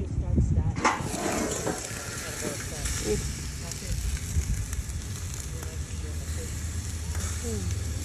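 Gas grill running hot, with lobster tails and a sea bass fillet sizzling on the grate: a steady hiss over a low rumble, with faint voices in the background.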